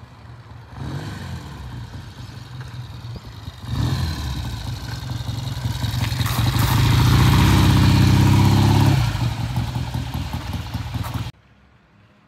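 1967 Triumph TR6 650 cc parallel-twin motorcycle engine running under power as the bike rides up toward and past, running well on a test ride. It grows louder to a peak about two-thirds of the way through, eases off, then cuts off suddenly shortly before the end.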